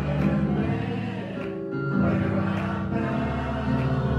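Gospel song sung in church with the band accompanying: voices over keyboard and a steady bass.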